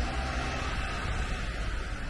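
Steady rushing outdoor noise over a low rumble, with no distinct events.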